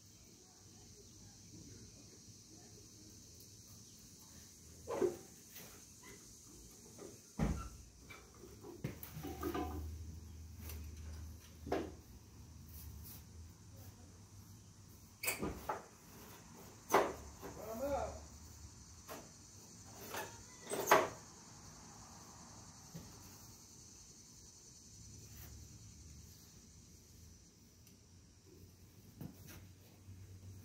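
Scattered clanks and knocks of hand tools and metal parts as a Cub Cadet 126 garden tractor is worked on by hand, the two sharpest knocks about two-thirds of the way through.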